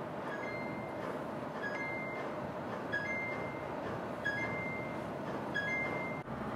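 A short electronic two-note tone, a brief lower note followed by a longer higher one, repeating five times about every 1.3 seconds over a steady hiss.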